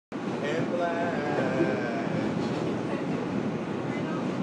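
New York City subway car running, a steady rumble of the train heard from inside the car.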